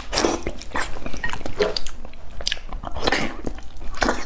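Close-miked eating of braised pork knuckle: biting into and chewing the soft skin and meat in irregular mouth sounds several times a second.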